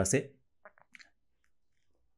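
A few faint, short wet mouth clicks, about half a second to a second in, as a man pushes his tongue out of his mouth as far as it will go.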